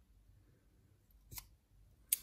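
A single short snip of scissors cutting through a strand of yarn, about one and a half seconds in, against near silence.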